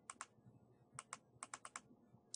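Faint keystrokes on a computer keyboard: a pair of taps at the start, another pair about a second in, then four quick taps.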